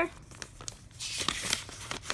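Paper rustling and crinkling as a folded paper letter is unfolded by hand, with a brief louder rustle about a second in.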